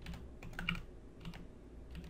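Computer keyboard being typed on: a handful of separate, faint keystrokes spread over the two seconds.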